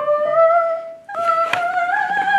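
A single voice singing two long held notes, the second higher than the first, each sliding slightly up in pitch. A short click sounds about a second and a half in.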